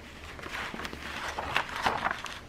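Clear plastic carrier sheet of heat-transfer vinyl crackling and rustling as hands handle and smooth it over a fabric placemat, a run of irregular short crackles that grows busier in the second half.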